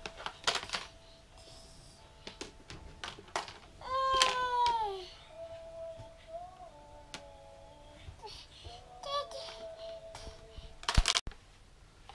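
A baby's voice: one loud vocal sound falling in pitch about four seconds in, with scattered clicks and clatter of plastic clothespins and a plastic basket being handled, and a sharp knock near the end.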